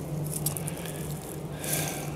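Quiet workshop room tone with a faint steady low hum, and a brief soft hiss near the end.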